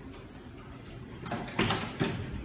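Richmond traction elevator's stainless steel doors sliding shut, with a loud clunk about one and a half seconds in and another thump as they meet.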